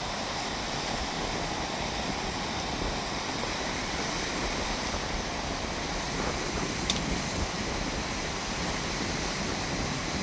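Steady wash of ocean surf and wind with no break, and one sharp click about seven seconds in.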